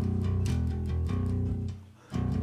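Waterstone five-string electric bass played with a pick: a quick run of repeated low notes with a few changes of pitch, which stops just before the end.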